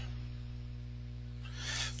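A steady low electrical hum made of several even tones runs under a pause in the narration. A soft breath comes in near the end.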